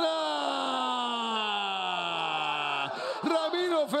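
A football commentator's long drawn-out shout celebrating a goal, one held call for about three seconds whose pitch falls steadily before he breaks back into rapid talk.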